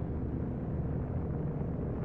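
Low, steady rumbling drone of a dark ambient background bed, with nothing else standing out.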